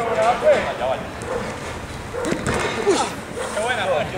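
Footballers' voices shouting and calling out to each other during play, with a few sharp knocks in between.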